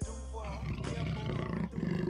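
A big cat's roar sound effect, coming in about half a second in and growing louder toward the end, over background music.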